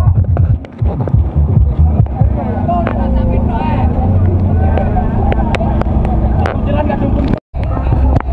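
Loud music with a heavy, steady bass from a miniature truck's sound system, with voices shouting close by. The sound drops out for a moment near the end.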